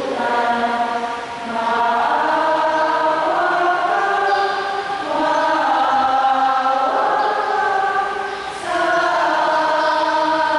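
Voices singing a slow hymn in long held notes. The singing breaks off briefly three times, about every three to four seconds, between phrases.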